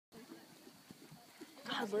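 Faint, muffled hoofbeats of a Quarter Horse mare trotting on a sand arena, with quiet background murmur. A woman starts talking near the end.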